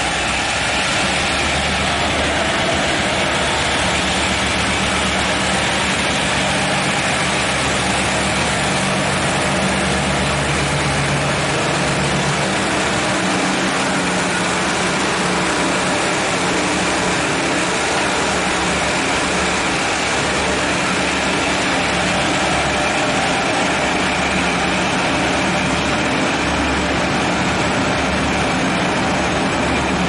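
Diesel-electric locomotive R133 running as it draws a train of passenger carriages in along the platform, its low engine hum strongest in the first dozen seconds, then the carriages rolling past on the rails. The sound echoes in the enclosed underground station.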